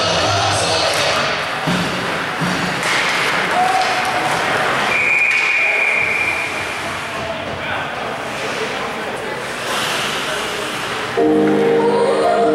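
Hockey arena sound during play: crowd voices and the noise of skates and sticks on the ice, with a short high whistle about five seconds in. Loud arena PA music starts again near the end.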